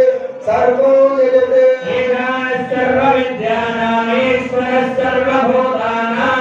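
A man chanting Sanskrit mantras into a microphone for a kumkuma archana, a continuous recitation on long held notes with brief breaks for breath.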